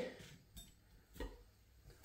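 Knife and fork tapping faintly on a plate twice while a roast potato is cut and lifted; otherwise very quiet.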